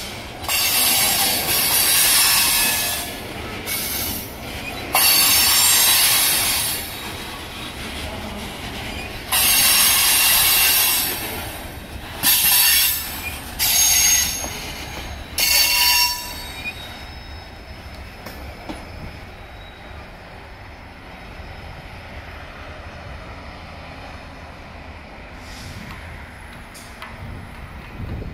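Freight car wheels on a passing Norfolk Southern train squealing against the rails in a run of loud, shrill bursts. The squeal stops about sixteen seconds in, leaving the quieter steady rumble of the cars rolling away.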